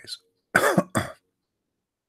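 A man coughs twice in quick succession, about half a second in.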